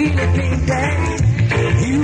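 Reggae dubplate playing: a sung vocal over a heavy, steady bass line.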